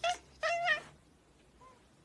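Orange tabby cat meowing twice in quick succession, a short call and then a longer one with a wavering pitch, followed by a faint third short call about a second and a half in.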